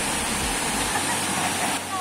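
Steady rush of a small waterfall pouring into a river pool, with low rumbles on the microphone in the first second.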